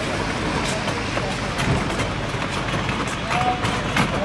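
Two-wheeled litter bin cart being pushed over wet paving stones: a steady rolling noise with street noise and people's voices behind it.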